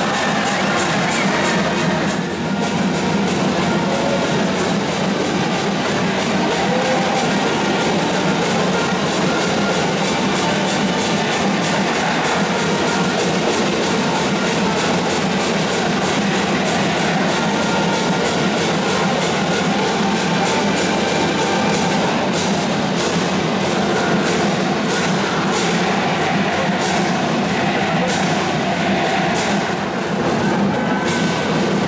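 A high school cheering brass band playing a fight song with drums beating time. The closed stadium roof makes it echo so heavily that the loud playing blurs and is hard to make out.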